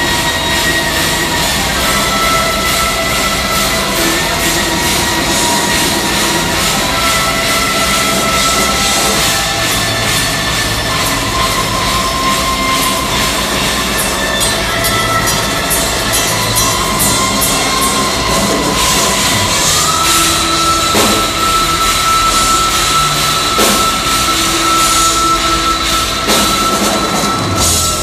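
Live metal band playing at full volume, heard from the crowd in a concert hall: distorted electric guitars with long held notes over bass and drums, with no singing.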